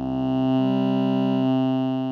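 ModBap Osiris digital wavetable oscillator sounding a steady formant-filtered tone while its Y-axis is moved from the fundamental toward the sampled second harmonic, one octave up. The tone swells over the first half second, and about half a second in its lowest part drops away.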